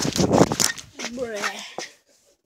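A person's voice speaking indistinctly, with loud rubbing noise from a handheld phone being swung about in the first half second.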